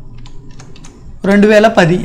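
Faint keystrokes on a computer keyboard as a date is typed into a form field, then a man's voice starts speaking, louder than the typing, a little over a second in.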